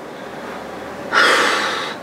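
A woman's loud, breathy sigh about a second in, fading out within a second: an exasperated reaction.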